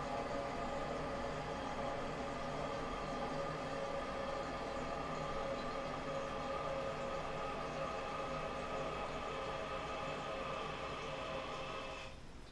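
Old ballcock fill valve refilling a toilet tank after a flush: a steady rush of water with a held whistling tone, fading out near the end as the float, its arm bent down, closes the valve below the overflow tube.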